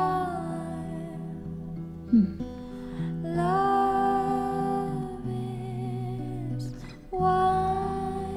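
A female voice sings long held notes in three phrases over acoustic guitar, with short pauses for breath between them. A brief sharp sound about two seconds in is the loudest moment.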